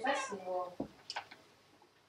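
A woman's voice speaking a few short syllables, followed a little under a second in by a short dull thump and a couple of faint clicks.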